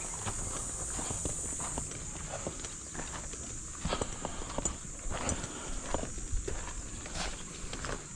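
Irregular footsteps with scattered small knocks and scrapes, as someone walks and moves about on a hard floor.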